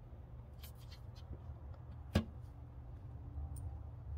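Faint clicks and scrapes of a small flathead screwdriver and fingertips working at a chrome car badge to pry it off the fender paint, with one sharper click about two seconds in. A low steady rumble runs underneath.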